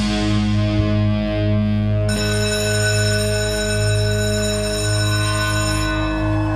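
Live rock band playing a held, droning passage without drums: sustained low notes, with a high ringing tone entering about two seconds in.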